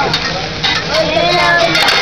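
Fried rice and meat sizzling on a hot steel hibachi griddle, with a metal spatula scraping and clicking against the plate as the food is stirred. Faint voices come in during the second half.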